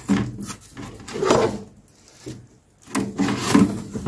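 Cardboard packing insert being worked loose inside a microwave oven's cavity, scraping and rubbing in irregular strokes, with a short lull about two seconds in.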